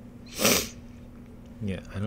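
A short, sharp burst of breath from a man about half a second in, the loudest sound here, over a faint steady low hum; he starts speaking near the end.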